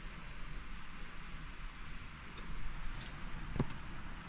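Faint rustling and handling of shredded lettuce as it is laid onto slices of bread, with one sharp click near the end.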